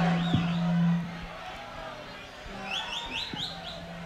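Live reggae concert sound between songs: a low steady hum fades out about a second in, then a quick run of about five rising, whistle-like chirps follows in the second half.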